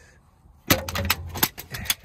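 Steel hand tools (a breaker bar and wrench) clinking and rattling against a semi truck's belt tensioner as they are worked loose. It is a quick run of sharp metallic clanks starting under a second in.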